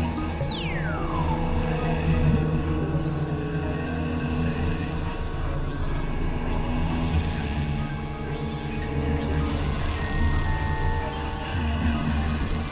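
Experimental electronic drone music from synthesizers: steady low drones with thin sustained high tones above them. Near the start, a high tone glides steeply downward.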